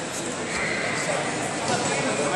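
Indistinct voices calling out over a background of chatter in a large sports hall, with a brief high-pitched call a little after half a second in.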